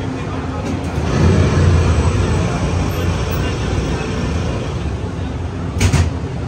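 Radiator Springs Racers ride vehicle rolling along its track: a steady rumble that swells about a second in, with a sharp knock near the end.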